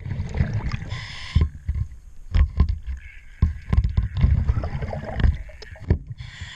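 Underwater sound of a diver's breathing regulator: a short hiss of inhaled air about a second in, then a long rumble of exhaled bubbles. Sharp knocks and clicks of the zinc anode being handled and fitted against the hull run through it.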